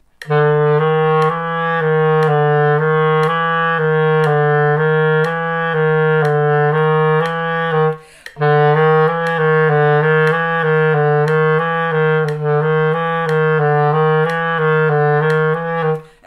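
Clarinet playing a fast, repeated low-register pinky-key exercise on the notes E, F and G-flat in an even pattern, with one short breath break about halfway through. Faint metronome clicks about once a second.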